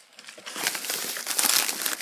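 Plastic bubble mailer crinkling as it is picked up and handled, starting about half a second in.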